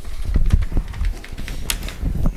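Sheets of paper being handled and shuffled at a desk close to a microphone: a run of irregular clicks, knocks and short rustles.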